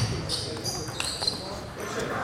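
A table tennis ball being played in the last strokes of a rally, with sharp clicks of ball on bat and table. Short high squeaks of players' shoes on a wooden sports-hall floor come in the first second.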